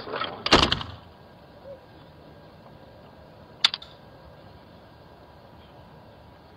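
A house door being opened: a loud clatter of the door and latch about half a second in, then one sharp click a little over three and a half seconds in, with faint hiss between.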